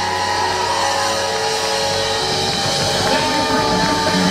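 Live jam-funk band playing loud and steady: electric guitar over drum kit and bass. A bass line of short stepping notes comes in about three seconds in.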